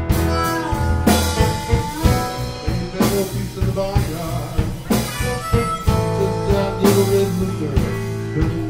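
Live band playing blues-rock: strummed acoustic guitar over electric bass and a drum kit, with strong drum and cymbal hits about once a second.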